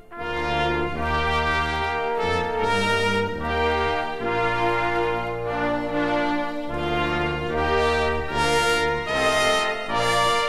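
Orchestral arrangement of a national anthem led by brass (trombones, trumpets and horns), playing in broad sustained chords. It begins just after a momentary break at the very start.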